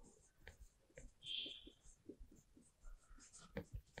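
Felt-tip marker writing on a whiteboard: faint, short strokes with a brief squeak about a second in and a few light taps near the end.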